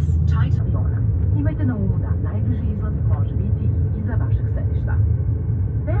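Steady low hum in the cabin of a parked ATR 72-600 turboprop airliner, with faint voices over it.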